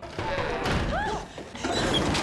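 Knocking and thuds sounding all around from a TV drama soundtrack, with short voices crying out over them.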